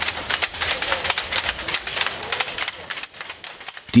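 Wooden handloom clattering as it is worked by hand: rapid, dry clacks that fade out about three seconds in.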